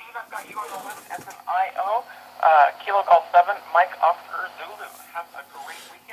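A voice coming over a handheld amateur-radio transceiver's speaker. It sounds thin and narrow-band, like radio speech, with a faint steady hum underneath and the talking louder from about a second and a half in.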